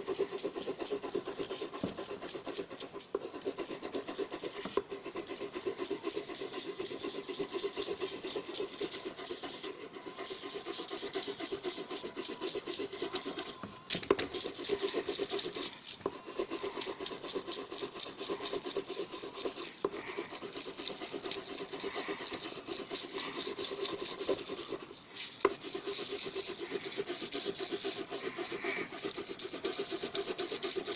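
Blue colored pencil scratching back and forth on paper in rapid, even shading strokes, with a few brief pauses.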